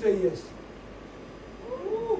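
A brief spoken word at the start, a short pause in room tone, then near the end a brief vocal cry that rises and falls in pitch.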